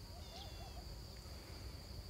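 Faint countryside sounds: a steady high insect buzz, with a short wavering bird call about half a second in.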